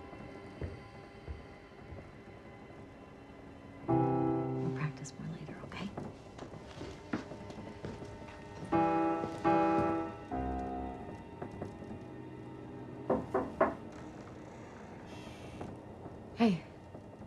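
Piano chords struck a few times, each ringing out briefly over a soft, sustained music background; three short sharp sounds follow near the end.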